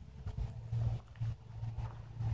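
Low, uneven rumble of wind buffeting a handheld camera's microphone outdoors, with a few faint ticks.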